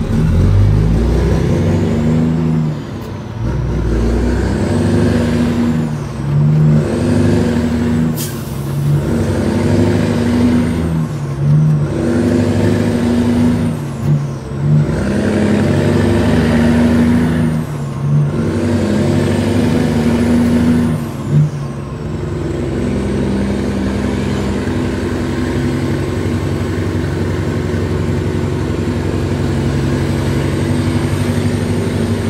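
Caterpillar 3406E diesel of a Peterbilt 379, heard from inside the cab while pulling up through the gears of its 18-speed transmission. The revs and a high whistle climb and drop again at each upshift, every two to three seconds, with a brief sharp sound about eight seconds in. For the last third the engine settles into a steady pull.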